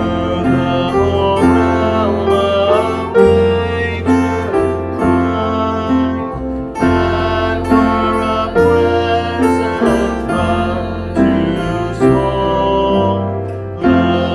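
Live acoustic guitar music, with guitars played over a steady bass line in a slow, continuous piece.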